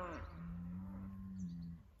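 Cattle lowing back and forth. A long moo falls away and ends just after the start, then a low, steady moo follows and fades near the end.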